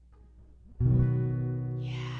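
A single chord strummed once on an acoustic guitar about a second in, then left ringing and slowly fading, played as a try-out of the guitar effect just switched on.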